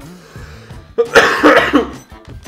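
A man coughing: one sudden, loud spell about halfway through, lasting just under a second.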